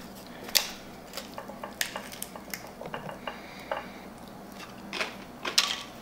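Tostitos tortilla chips crunching and clicking as they are scooped through dip in a bowl and bitten, in scattered sharp crackles.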